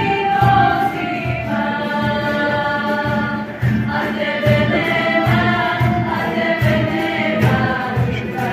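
A small group of women singing together in harmony, with sustained notes, over a steady beat on a cajón.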